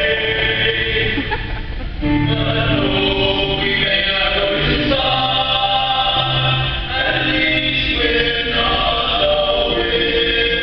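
Six-voice male a cappella ensemble singing sustained close-harmony chords, moving to a new chord every two to three seconds.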